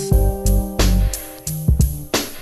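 Instrumental stretch of a G-funk hip-hop track: a drum-kit beat with deep bass and sustained chords, no vocals.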